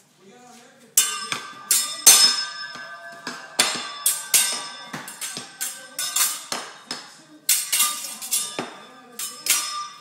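A kitchen knife clanging against metal in a run of sharp strikes, about two a second, each with a ringing metallic tone, starting about a second in.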